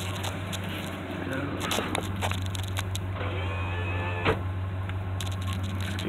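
Power window motor in a 1969 Buick Electra's door running the glass with a steady low hum, with a sharp click about four seconds in.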